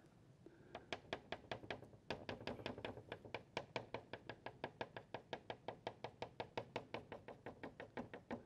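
Mungyo soft pastel stick worked over paper on a wooden easel board in quick short strokes: a faint, even run of light taps, about six or seven a second, starting about a second in.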